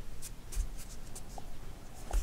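Acrylic yarn tail being drawn through crocheted stitches with a darning needle, as the end is woven back and forth to secure it: light scratchy rubbing in several short strokes.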